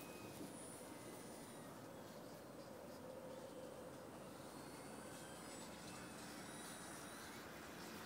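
Faint, steady motor whine of an E-flite Beast radio-controlled model plane flying at a distance, its pitch drifting slightly up and down.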